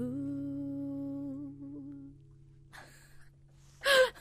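A woman humming one long held final note over a steady low ringing tone from her acoustic guitar; both fade out about two seconds in. A voice breaks in just at the end.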